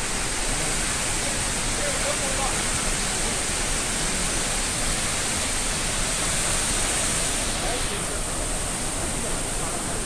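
Large waterfall in full monsoon flow: a steady, heavy rush of falling water that covers the whole range from low to high, with no pauses.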